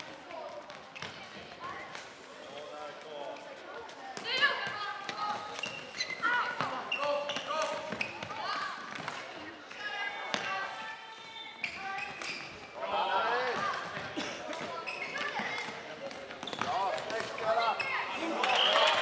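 Floorball game sound in a large sports hall: young players and spectators calling out and shouting over scattered sharp clacks of sticks hitting the plastic ball. The shouting grows louder near the end.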